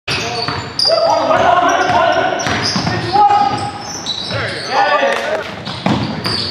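Basketball game on a hardwood gym floor: the ball bouncing with several sharp impacts, over players' voices.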